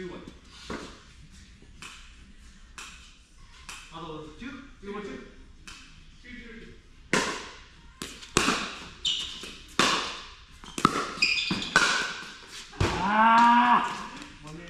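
Pickleball paddles striking a hard plastic pickleball in a quick rally: a string of about eight sharp pops in the second half, roughly every half second to a second. It ends with a player's long, loud drawn-out shout, the loudest sound.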